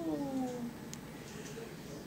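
The end of a long, drawn-out "yeah" in a woman's voice, gliding steadily down in pitch and fading out about two-thirds of a second in. Then quiet room tone with a faint click about a second in.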